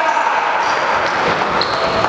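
Sounds of an indoor basketball game in a gym: the ball and players' feet on the court with voices in the hall, at a steady level.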